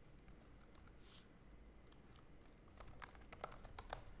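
Faint typing on a computer keyboard: scattered key clicks, with a quicker run of keystrokes in the last second or so.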